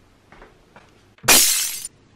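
A crisp red apple giving one loud crunch, with a short thud at its start. The crunch lasts about half a second, then cuts off abruptly.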